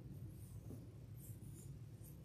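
Quiet room tone: a steady low hum with a few faint rustles.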